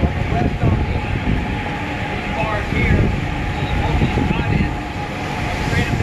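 Steady low rumble of a research ship's working deck at sea, with faint, indistinct voices.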